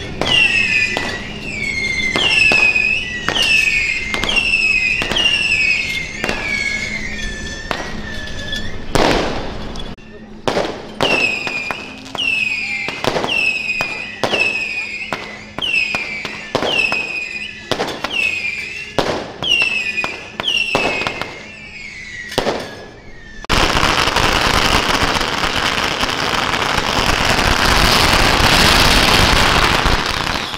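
Firecrackers popping irregularly, with a high swooping whistle repeating about once a second over them. About 23 s in, a long string of firecrackers sets off a dense, continuous crackle that runs on loudly to the end.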